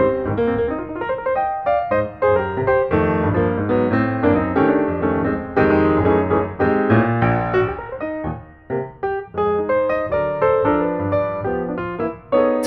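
Background music: a piano melody played over steady chords, notes changing several times a second.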